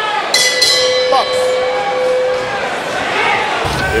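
Boxing ring bell rung to start round eight. Its metallic tone rings on for about two seconds over the arena crowd.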